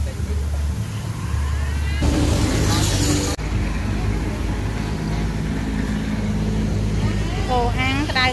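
Steady low hum of a motor vehicle engine running close by, with people talking, loudest near the end. About two seconds in, a hiss rises and then cuts off abruptly about a second later.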